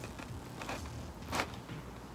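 Faint handling noise: a low rumble with a few light ticks and one brief rustle about a second and a half in.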